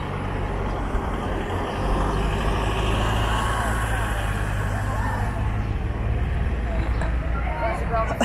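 Heavy vehicle's engine running close by in street traffic, a steady low hum with road noise that grows louder about two seconds in and eases near the end.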